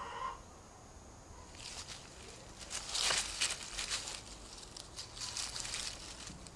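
Dry fallen leaves crackling and rustling in a quick run of sharp crunches, loudest about halfway through, as a cat moves over a sparrow it has killed. A short pitched call comes at the very start.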